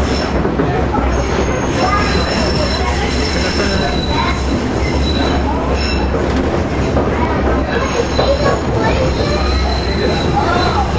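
Trolley car running on rails, heard from inside the car: a steady deep rumble of wheels and motors, with thin high-pitched wheel squeal coming and going as it rounds a curve.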